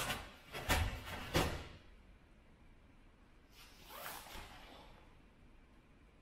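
Karate kata techniques: three sharp snaps of the cotton gi with the strikes and stance shifts in the first second and a half, then a softer swish of movement about four seconds in.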